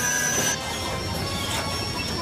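Cartoon sound effects of an energy blast striking a metal tower, with crashing noise under background music; some held high tones stop about half a second in.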